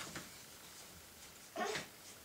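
A small child's brief vocal sound, a short pitched noise about one and a half seconds in, over quiet room noise with faint soft rustles.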